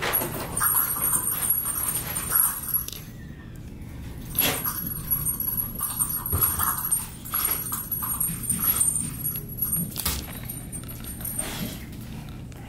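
A dog rummaging through a pile of plush and plastic toys and moving them about on a hard floor: soft rustling with a few sharp knocks. A thin, high-pitched steady whine comes and goes over it.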